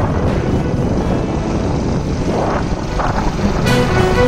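A steady low rumbling noise. Near the end, background music with held string notes comes in.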